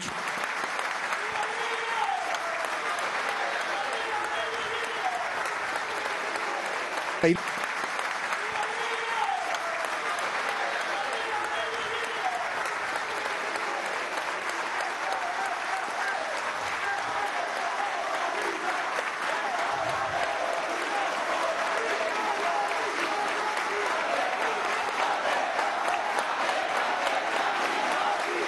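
Sustained applause from a large standing audience, with voices calling out through the clapping. A single sharp knock sounds about seven seconds in.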